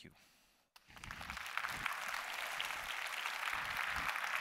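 Audience applauding: the clapping starts about a second in, swells quickly and then holds steady.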